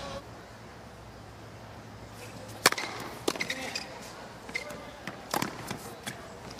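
Tennis ball struck by rackets in a rally: a sharp crack about two and a half seconds in, the loudest sound, a second hit about half a second later, and another near the end.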